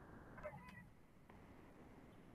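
Near silence, with a faint, brief sound about half a second in.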